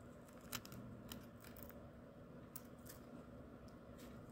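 Faint, scattered crisp crackles as a spoon pushes into and lifts dry, fluffy potassium bisulfate crystals.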